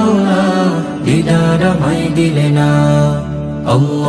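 Male voice group singing a Bengali Islamic devotional song (gojol) in harmony, holding long chords over a low steady hum, with a sharp accent near the end.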